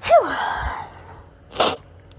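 A person's short non-speech vocal sound: a sudden burst whose pitch falls over about half a second, then a quick breath about a second and a half later.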